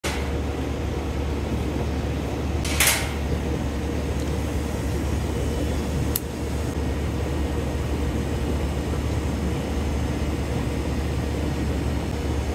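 Steady low mechanical hum of background machinery, with a short rush of noise about three seconds in and a single sharp click just after six seconds.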